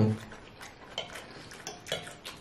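Quiet eating at a table: a few light clicks of metal forks against a plate and food, spaced out over the two seconds.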